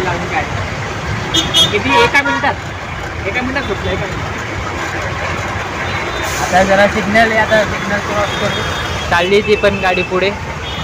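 Steady road and traffic noise heard from an open vehicle moving through city traffic, with people's voices breaking in over it a few times.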